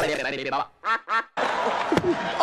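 A voice in short utterances, with brief near-silent gaps about a second in, as from the Oscars slap clip's audio run through a Sony Vegas-style voice/pitch effect.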